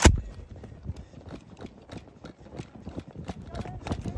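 Running footsteps through tall dry grass, an uneven patter of footfalls and rustling stalks with the body-worn camera jostling. A single sharp, loud knock comes right at the start.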